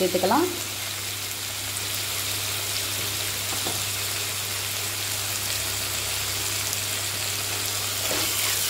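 Chopped onions, garlic and tomatoes frying in oil in a clay pot, a steady even sizzle.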